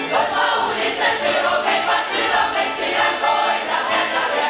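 Russian folk choir of men's and women's voices singing a folk song together in full chorus.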